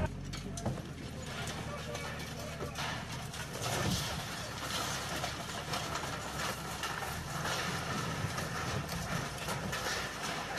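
Scattered knocks and clatter of broken concrete and debris being shifted in the rubble of a collapsed building wall, over a steady background noise.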